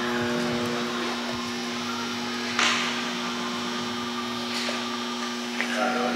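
A steady machine hum with a low, even drone, and a brief hiss about two and a half seconds in.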